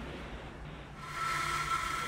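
Low hiss and hum of a mission-control voice loop between callouts, with a steady high tone setting in about a second in.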